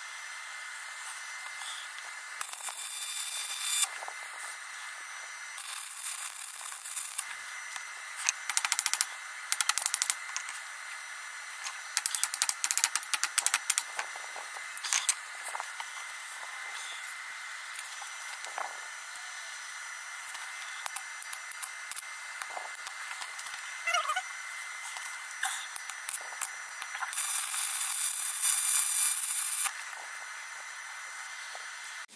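Stick (MMA) arc welding on a steel auger screw with an inverter welder: short bursts of crackling, sizzling arc, with the longest burst near the end. Between the burst, clusters of sharp crackles and ticks.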